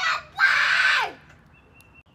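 A loud, harsh scream-like cry lasting about half a second, falling in pitch as it ends, followed by near quiet with a faint thin high tone near the end.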